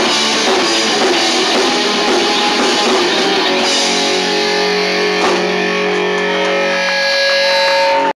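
A live horrorpunk band playing loud distorted electric guitar over drums. About four seconds in, the busy playing gives way to long held, ringing notes, with a single sharp drum hit a second or so later.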